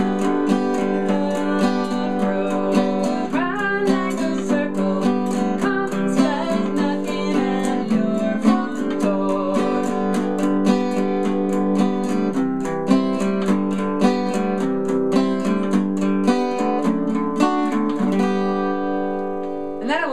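Acoustic guitar picked with a flat pick in steady eighth notes, striking the bottom, middle and top strings in turn (bottom, middle, top, middle), half plucking and half strumming through a chord progression. The strokes stop near the end and the last chord rings out and fades.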